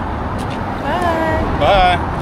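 A woman's raised voice in two short utterances, about a second in and near the end, over a steady low rumble of wind and traffic noise.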